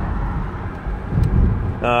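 Road noise inside a moving car's cabin: a steady low rumble of engine and tyres that swells briefly about halfway through.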